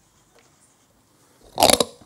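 Microphone handling noise: after faint room sound, a loud crackling rumble lasting about a third of a second near the end, as a lectern microphone is lifted from its stand.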